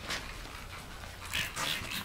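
Hand trigger spray bottle spraying a horse's legs. About halfway in come two short hissing squirts.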